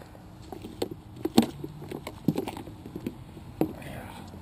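Irregular light clicks and knocks of objects being picked up and handled, about a dozen, the sharpest about a second and a half in.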